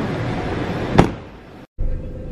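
A car door slams shut about a second in over a steady background noise. The sound dies away and cuts off abruptly just before the end.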